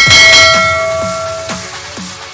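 A bell chime struck once and ringing out, fading over about a second and a half. Underneath it, electronic dance music plays with a steady kick drum about twice a second.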